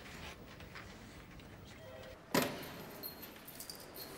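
A single loud heavy bang, like a steel cell door, a little over two seconds in, followed by a faint high metallic jingle like keys.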